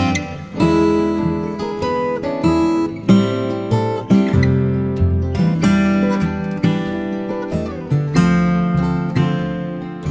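Upbeat instrumental acoustic guitar music, plucked and strummed chords over low bass notes.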